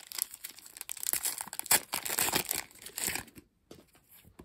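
Plastic wrapper of a Match Attax trading-card packet being torn and crumpled by hand, loudest about halfway through. It dies away near the end to a few light clicks of the cards.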